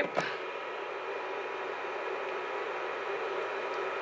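Steady fan hum and hiss with a few faint, steady high tones from a Z Potter induction heating plate running while it warms a blush compact to loosen the pan's glue.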